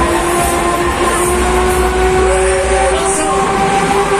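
Loud fairground ride sound system playing several steady held tones, which shift pitch about a second in, over the noise of the Break Dance ride running.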